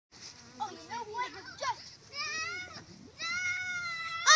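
Children's voices: a short burst of chatter, then two high-pitched held shrieks, the second starting about three seconds in and running longer and louder.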